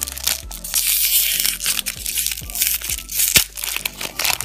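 Foil trading-card booster pack being crinkled and torn open by hand: a dense crinkling rustle with sharp crackles, the loudest crack a little after three seconds in.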